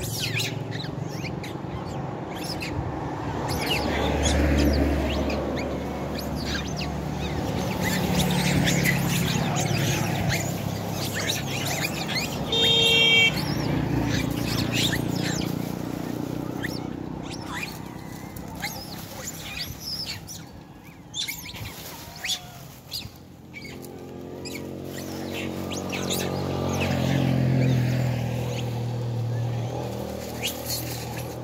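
A troop of long-tailed macaques giving repeated shrill chirps and squeals while squabbling over food. Road traffic rises and fades several times underneath.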